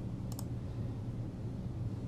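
Two quick computer mouse clicks about a third of a second in, over a steady low hum.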